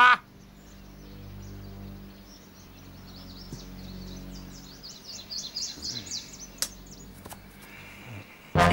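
Low, held background music notes, with a run of quick, high bird chirps from about three seconds in. A single sharp click comes near the end.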